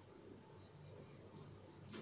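Insect chirping: a faint, high, steady trill of rapid even pulses.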